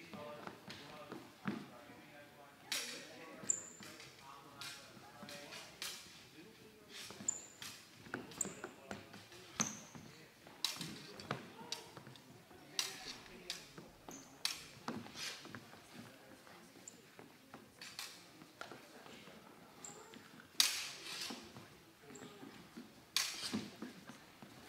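Steel training longswords clashing in a fencing bout: irregular sharp clacks, some followed by a brief high ring, echoing in a large hall. The loudest clashes come near the end. Thuds of footwork on the wooden floor come between them.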